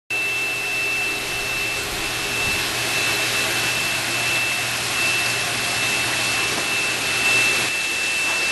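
A machine running steadily: an even rushing hiss with a constant high-pitched whine and a low hum underneath, like a motor-driven blower or pump. It starts abruptly and cuts off sharply just after the end.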